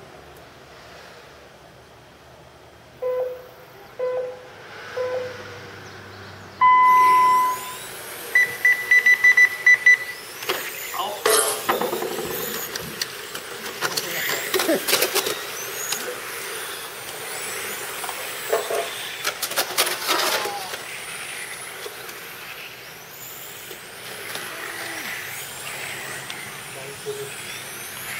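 Electronic race-start countdown: three short beeps a second apart, a long higher start tone, then a quick run of high beeps. The radio-controlled touring cars then pull away and keep racing, their motors whining and rising and falling in pitch as they pass.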